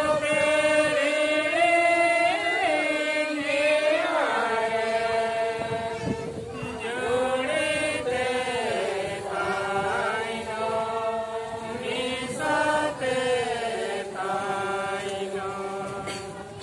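A group of voices singing a slow, unaccompanied hymn together, in long held notes that glide gently from one pitch to the next.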